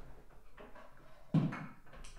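Faint rustling and handling noises as a flute is fetched from beside the desk, with a single knock about one and a half seconds in.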